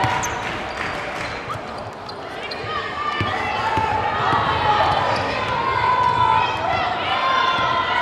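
Basketball game: a ball bouncing on the hardwood court as it is dribbled, among players', bench and crowd voices calling out.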